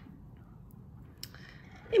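Faint handling sounds of a circular knitting needle, its flexible cable and yarn being worked between the fingers, with one light click just past a second in.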